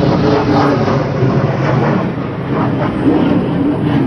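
Steady, loud street noise, like passing vehicle traffic.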